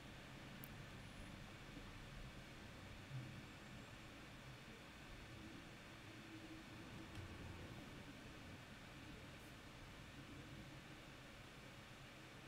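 Near silence: faint room tone with a low, even hiss.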